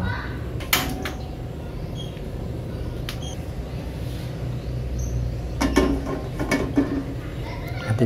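Voices in the background for about a second and a half past the middle, over a low steady hum, with a sharp knock near the start.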